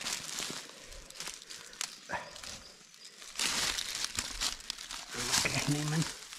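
Footsteps crunching and rustling irregularly on a forest path, louder about three and a half seconds in and again near the end, with a brief voiced sound just before the end.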